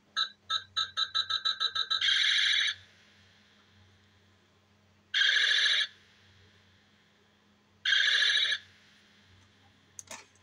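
Electronic laser sound effects from a Buzz Lightyear Power Blaster talking action figure's speaker: a run of short beeps that quickens over about two seconds into a longer buzzing zap, then two more zaps a few seconds apart.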